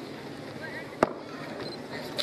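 A single sharp knock about a second in, over the steady murmur of a large outdoor gathering.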